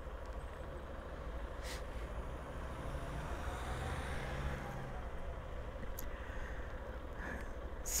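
Honda CB125F's single-cylinder engine idling steadily with the bike stopped: a low, even rumble.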